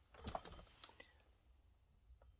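Near silence, with a few faint clicks and a soft rustle in the first second.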